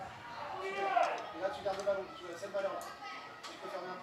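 Faint, distant voices shouting and calling across a football pitch and stands while a defensive wall is set up for a free kick.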